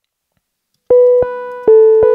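Synthesizer played from its keyboard: silent for about the first second, then four notes in quick succession, each starting sharply and held, all near the same middle pitch. The input signal is too hot, peaking near −1 dB.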